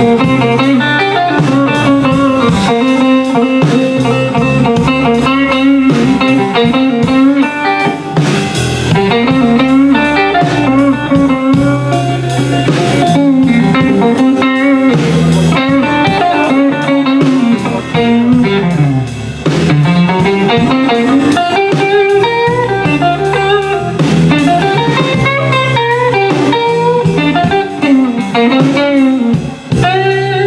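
Live electric blues trio playing: electric guitar lead with bending notes over bass guitar and drum kit, with no singing.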